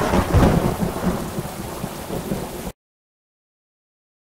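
A broad, rumbling noise that fades steadily, then cuts off abruptly to silence a little over halfway through.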